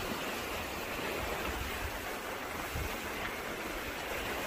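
Steady wash of shallow sea water at the shore, an even hiss with no distinct splashes.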